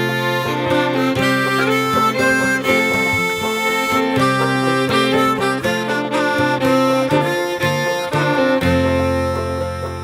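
Acoustic folk band playing an instrumental introduction: a sustained melody line over plucked strings, with a low held note coming in near the end.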